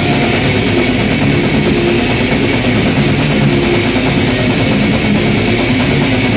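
Death metal band playing live at full volume: distorted guitars, bass and drums in a dense, unbroken wall of sound.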